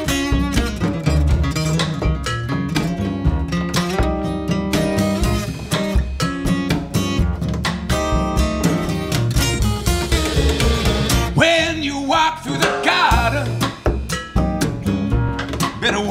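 A blues trio playing an instrumental passage: strummed acoustic guitar, plucked upright double bass and a drum kit keeping a steady beat. A higher, bending melodic line joins over the last few seconds.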